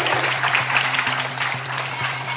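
Audience applauding, a dense patter of many hands clapping that eases slightly toward the end, over a steady low hum.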